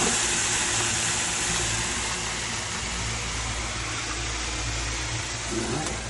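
Steady rushing hiss with a low hum inside a moving aerial tram gondola, slowly getting a little quieter.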